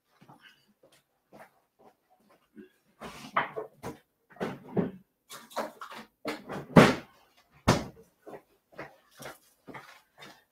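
Rummaging in a room: a door or drawer and containers being handled. The knocks, bumps and rustles start about three seconds in, and the loudest thumps come near the middle.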